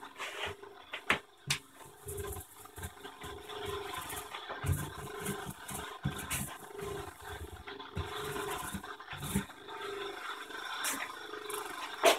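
Small hand roller rolled back and forth over resin-wetted spread-tow carbon fabric, a faint rasping stroke repeating about once a second. A couple of sharp clicks about a second in.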